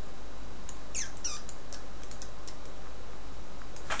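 Computer mouse clicking now and then as controls are dragged about. About a second in come two short, high squeaks that fall in pitch. A steady low hum runs underneath.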